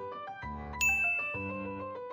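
Light background music with a single bright ding about a second in, a chime that rings on for about a second over the music.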